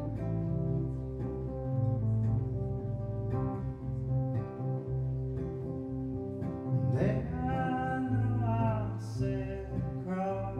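Live band music: a strummed acoustic guitar over low held keyboard notes, with a man's voice starting to sing about seven seconds in.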